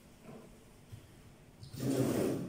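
A pause in speech with low room noise, and a voice beginning again near the end.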